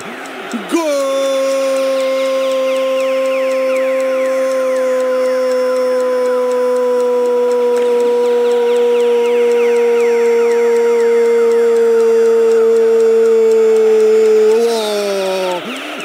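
A male radio football commentator's prolonged goal cry, "Golo!", held as one long note for about fourteen seconds, sinking slightly in pitch and breaking off with a downward slide shortly before the end.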